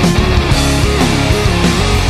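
Studio recording of a pop punk band playing a loud, fast full-band passage with electric guitars, bass and drums.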